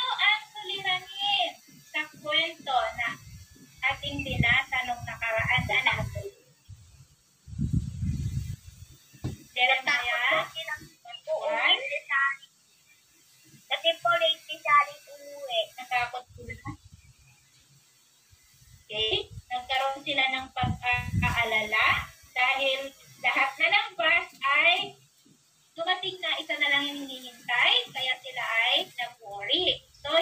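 Voices from an online class coming through a laptop speaker in stretches with short pauses, with music under them, and a brief low rumble about eight seconds in.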